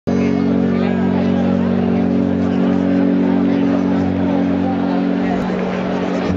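Amplified live band holding a low, steady droning chord, with crowd noise over it; the chord shifts shortly before the end.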